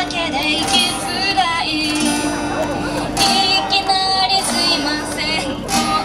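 A young woman singing a song with held notes while strumming an acoustic guitar to accompany herself, sung into a stage microphone.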